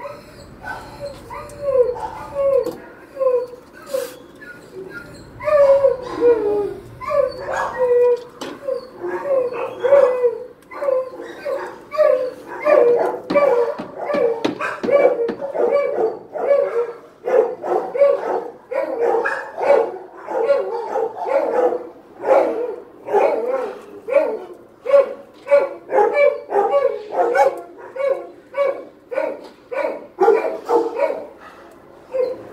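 Dog barking and yipping over and over in a shelter kennel, short high barks, spaced out at first, then coming faster and louder from about five seconds in, several a second.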